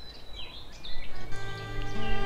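Birds chirping in woodland over a low rumble, then music starts a little over a second in with held notes.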